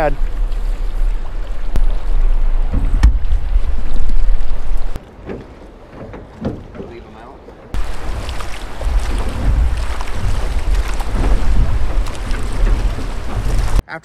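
Wind buffeting an action-camera microphone on a drift boat, with water rushing and lapping at the hull. It drops away abruptly about five seconds in and returns a few seconds later.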